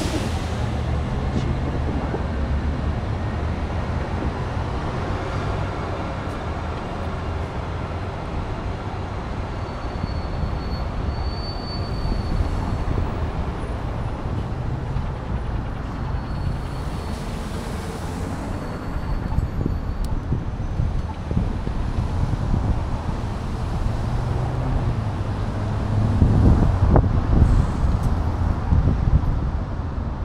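Steady city traffic noise mixed with a low rumble of wind on a moving microphone, getting a little louder near the end, with a faint high squeal about ten seconds in.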